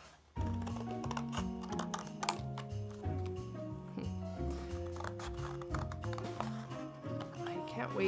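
Scissors snipping through thin cereal-box card in a run of quick, crisp clicks, over background music with a stepping bass line that comes in just after the start.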